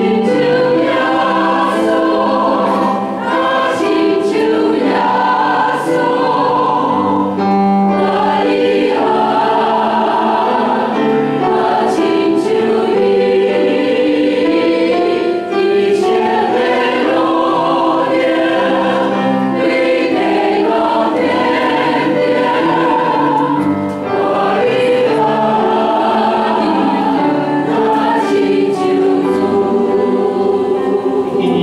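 A hymn sung without a break by a mixed group of men's and women's voices.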